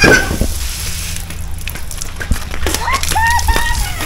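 Water from an outdoor shower spraying and splashing onto the pebble basin below it, a steady patter, with a sharp click at the very start and a child's short calls about three seconds in.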